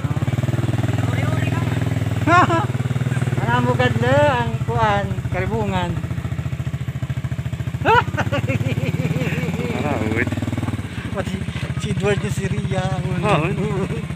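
A small engine running steadily with an even low rumble, with people's voices talking over it at several points.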